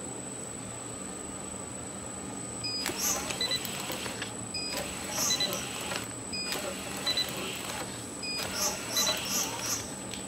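Label applicator running, with a steady high whine throughout. After a quiet start it goes through four label-feed cycles, about two seconds apart, each opening with a short electronic tone and followed by a rattling, rustling run as the label web advances past the inkjet printhead.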